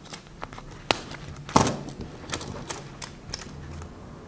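A small fabric coin purse being folded and closed by hand: cloth rustling with a run of sharp clicks, the loudest about a second and a half in.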